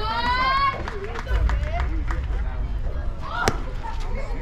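A pitched baseball smacking into the catcher's mitt once, with a single sharp pop near the end. Before it, a voice shouts at the start and spectators talk, over wind rumble on the microphone.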